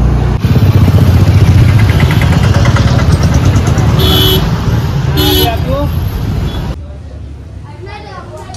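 Busy road traffic with motorcycles and cars running, and two short vehicle horn toots about four and five seconds in, over people's voices. Near the end the traffic noise drops away to quieter voices indoors.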